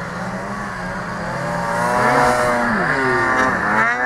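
Snowmobile engine running, its revs climbing about two seconds in and dropping back under a second later, as the sled bogs down stuck in deep powder.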